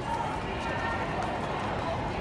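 Crowd of marchers walking and talking indistinctly, a steady murmur of distant voices and feet over a low rumble.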